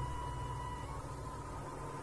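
Low background hiss and hum of a live stage recording, with faint held tones from the preceding music dying away in the first second.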